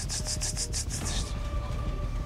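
A quick run of rhythmic rubbing or scraping strokes, about eight a second, that stops a little over a second in.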